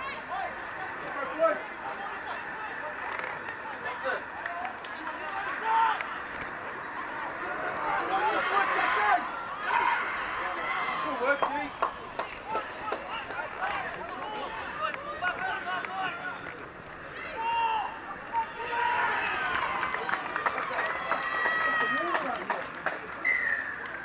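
Players and sideline spectators at a rugby league game shouting and calling during play: scattered, overlapping voices over steady outdoor background noise, busiest about eight to ten seconds in and again near the end.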